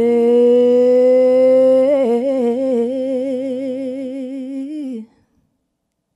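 A woman singing one long held note, sliding up into it from below, steady at first and then breaking into a wide, even vibrato about two seconds in before stopping sharply about five seconds in. A piano chord fades away beneath it.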